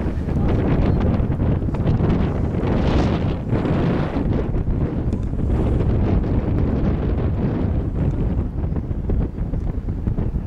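Wind buffeting the camcorder's microphone: a loud, uneven low rumble that swells stronger about three seconds in.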